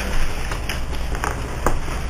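Papers being shuffled and handled on a table, with a few short ticks, over a steady low hum and hiss.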